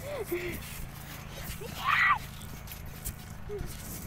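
Faint voices of boys playing, with a short, high shout about two seconds in.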